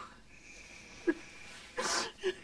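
A woman crying: a short, sharp catch in her breath about a second in, then a breathy gasping intake near the end.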